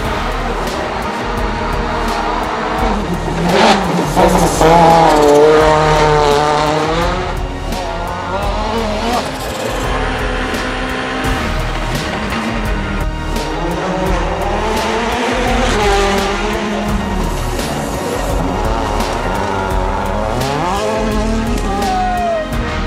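Citroën DS3 WRC rally car's 1.6-litre turbocharged four-cylinder engine revving hard, its pitch rising and falling through gear changes, loudest about four to seven seconds in. Music plays underneath.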